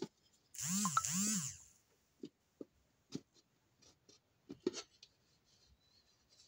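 A hand slide tool rubbing over the thin aluminium of a phonograph horn to smooth out a small dent. There is one loud scraping stroke of about a second, then a few light scattered clicks and taps of the tool against the metal.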